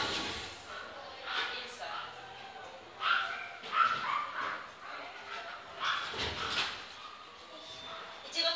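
Small poodle giving a few short barks and whines while being led on a leash, with a woman's voice now and then.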